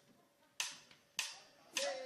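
A count-in before a band starts playing: three sharp, faint clicks evenly spaced about 0.6 s apart.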